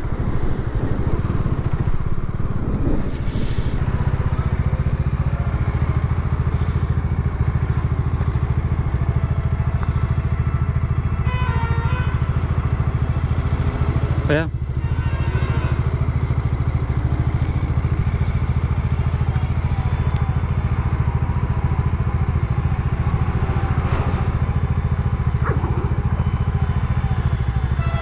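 Bajaj Dominar's single-cylinder engine idling steadily while the motorcycle is stopped, with a brief dip about halfway through.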